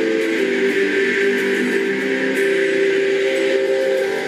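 Strat-style electric guitar being strummed, its chords ringing on steadily.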